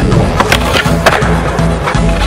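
Skateboard on concrete under a song with a steady beat: a few sharp board pops and clacks and the wheels rolling, mixed with the music.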